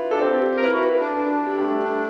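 Improvised jazz from clarinet, grand piano and hollow-body electric guitar. Held notes give way to a brief flurry of shorter notes, and held tones settle in again from about halfway.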